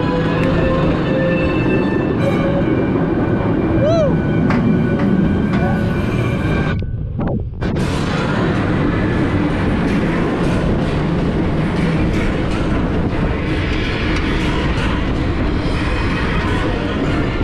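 Mako roller coaster train rolling out of the station and climbing the lift hill: a steady rumble with rapid clatter from the train on the track and the lift, with music over the first half.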